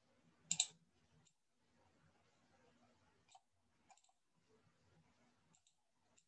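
Computer mouse clicking: a sharp double click about half a second in, then a few faint single clicks and a quick pair near the end, over near-silent room tone.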